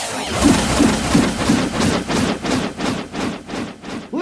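Hardcore electronic dance music with the deep bass dropped out: a repeated sharp drum hit, about three a second, coming slightly faster toward the end.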